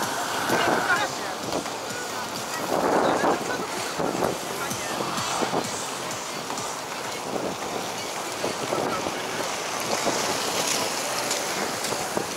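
Many inline skate wheels rolling together on asphalt, a steady rushing noise, with wind on the microphone of a moving skater.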